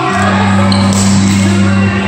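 Music with singing over a steady, held bass note that changes just after the start.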